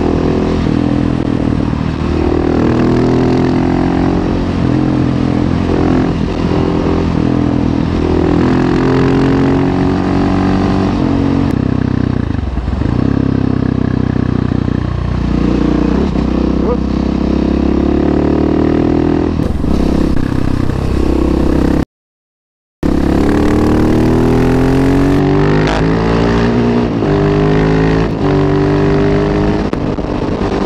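Husqvarna 701 Supermoto's single-cylinder four-stroke engine under way on the road. Its pitch climbs as it accelerates and drops back at each gear change. The sound breaks off completely for about a second two-thirds of the way through.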